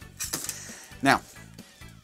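Ice cubes rattling and clinking as they are tipped out of a chilled coupe glass, a brief cluster of clinks in the first half-second, over background music.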